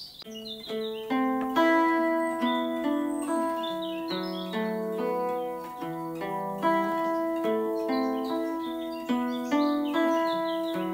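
Hollow-body archtop electric guitar playing a picked single-note riff with alternate picking: a quiet first note and an accented second note on each chord shape, with the open E string ringing between them. This is a picking exercise for the accent.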